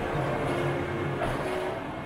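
Electric rack railcar of the Pilatus Railway running steadily as it climbs the steep rack line.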